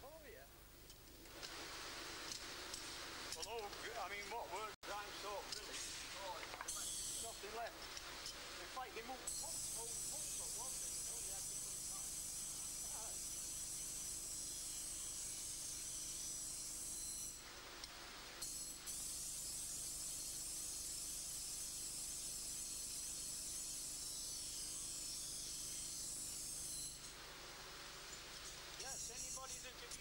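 Workshop background sound: faint indistinct voices for the first several seconds, then a steady high-pitched hiss through most of the rest, broken briefly a little past the middle.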